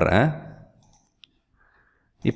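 A man's voice trails off, then a single faint, short click about a second in, in an otherwise quiet room.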